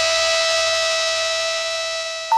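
A distorted rock track ending on one long held chord that rings on steadily and slowly fades.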